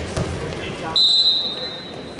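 A referee's whistle blown once, a high steady tone starting sharply about halfway through and lasting about a second, stopping the action as the match clock halts. A dull thud on the mat just before it.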